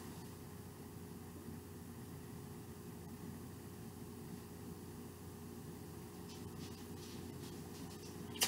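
Quiet, steady background hum of a room, with a few constant low tones under a faint even hiss, like a machine running somewhere in the house; a few faint soft clicks come near the end.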